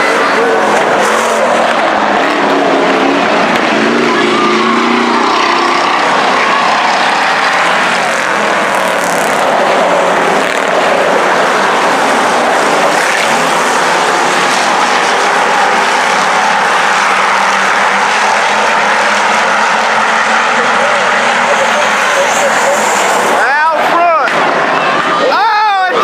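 Several IMCA Hobby Stock race cars running hard around a dirt oval, their engines making a dense, steady roar as they pass close together. Near the end a person's voice calls out over the engines.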